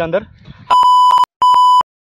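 Two loud, steady, high-pitched electronic beeps, each about half a second long, with dead silence between and after them: a bleep tone edited over the soundtrack after a spoken word ends.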